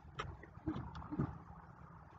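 Quiet sounds of a man eating a grilled corn dog: a faint click of the mouth and two short, low closed-mouth hums of tasting, over a steady low background rumble.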